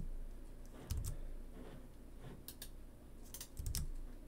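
A few scattered keystrokes and clicks on a computer keyboard, in small groups about a second in, around two and a half seconds and again near the end, some with a low thud under them.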